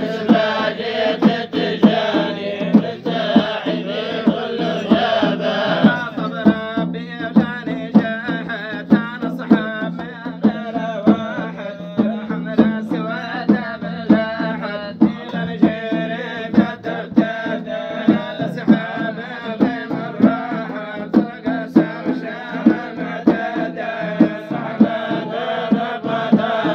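Tijani madih: men's voices chanting a religious praise song together, over a steady beat of large hand-struck frame drums.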